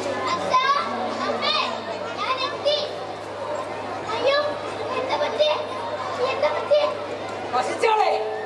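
Young voices talking and calling out over one another, some high-pitched, with a steady low hum underneath.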